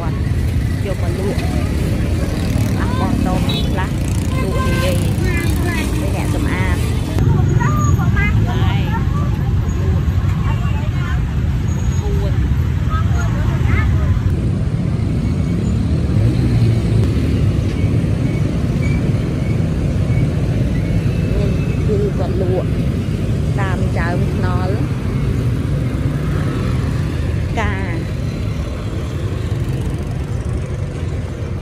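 Busy street ambience with a steady rumble of road traffic from passing cars and motorbikes, and scattered voices of people nearby.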